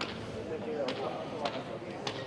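Low murmur of spectators' voices around an outdoor pelota court, with a few light knocks.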